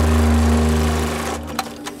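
Industrial sewing machine stitching a webbing strap: a steady running hum that fades after about a second, followed by a few sharp clicks near the end.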